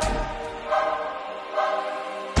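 Background music of a choir holding sustained chords, with new chords entering about two-thirds of a second in and again near the end.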